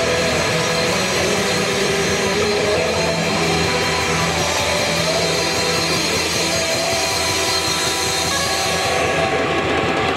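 Live rock band playing loud: distorted electric guitars holding sustained chords over drums and cymbals, with a lead guitar line that bends up and down in pitch.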